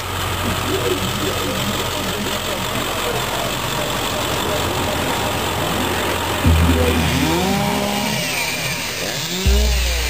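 Chainsaw revving up and down several times over a steady background noise. A low rumble cuts in suddenly about six and a half seconds in and again near the end.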